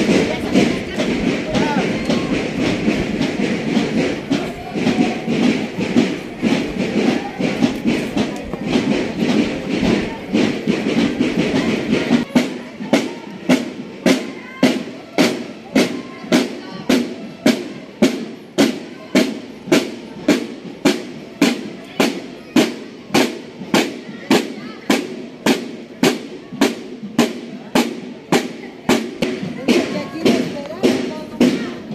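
Marching drum corps of snare and bass drums playing a marching cadence, with crowd chatter under it. About twelve seconds in, the drumming changes to a steady beat of single strikes, just under two a second.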